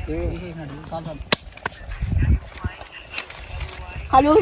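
People talking quietly at first, then two sharp clicks, about a second in and again about three seconds in, with a low rumble between them.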